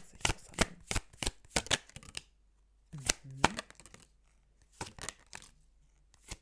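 Tarot deck shuffled by hand: a quick run of crisp card-edge slaps for about two seconds, a pause, then a few more slaps near the end.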